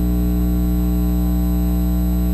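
Steady electrical mains hum with a stack of buzzing overtones, unchanging throughout.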